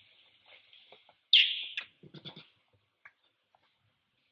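Infant long-tailed macaque screaming: one loud, high-pitched scream about a second and a half in that drops in pitch, followed by a few short, softer cries.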